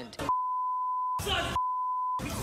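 Broadcast censor bleep: a steady 1 kHz beep masking profanity. It is broken about a second in by a short burst of unbleeped noisy sound, then the beep resumes.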